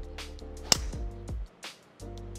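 Background music with a steady beat, and about two-thirds of a second in a single sharp crack of a driver striking a golf ball off the tee.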